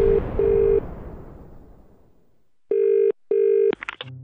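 British telephone ringing tone heard on an outgoing call: two double-rings, the first right at the start and the second near the end, each two short steady pulses with a brief gap between them. Under the first double-ring a fading noise dies away over the first couple of seconds.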